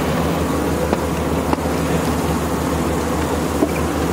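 Pickup truck engine idling steadily with a low hum, with a few faint clicks from the plow hitch being worked.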